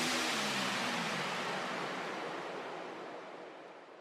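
Electronic dance music trailing off on a hiss-like noise sweep that grows steadily quieter, with a few low tones sliding down in pitch near the start.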